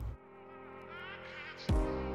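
A steady buzzing drone of several held tones, jumping suddenly louder near the end.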